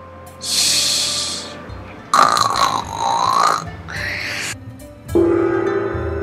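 A child's exaggerated tired vocal sounds over background music: a breathy puff, then a drawn-out groan that dips and rises in pitch. About five seconds in, a large chau gong is struck and rings on.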